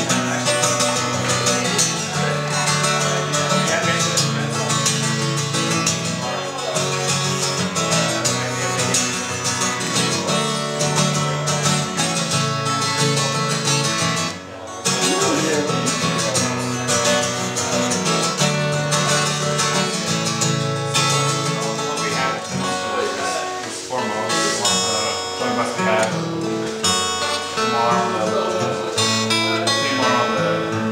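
Cutaway acoustic guitar played fingerstyle, a continuous picked melody with a short break about halfway through. People talk in the background.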